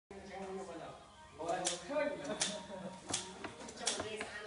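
A person's voice with sharp clicks in an even rhythm, about three-quarters of a second apart.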